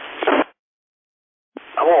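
Amateur radio voice transmissions relayed through a repeater: speech cuts off abruptly about half a second in, leaving about a second of dead silence, then the next transmission opens with a click and speech.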